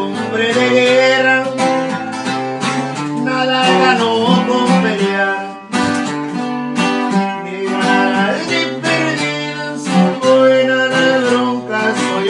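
Two acoustic guitars, one a twelve-string, playing an instrumental passage of a corrido: rhythmic strumming with a picked melody over it.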